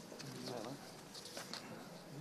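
Faint, low murmured voices in a meeting room, with a few short rustles of paper being handled.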